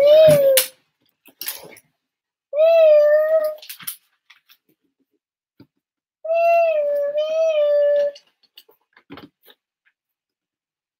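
A young child making a siren noise with his voice: a wavering, sung tone that comes three times, each lasting a second or two, while playing with a toy fire truck. A few faint clicks of LEGO pieces fall in the gaps.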